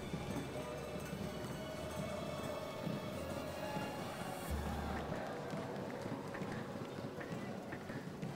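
Faint, steady stadium and pitch ambience during open play of a football match, with a faint held tone through the middle.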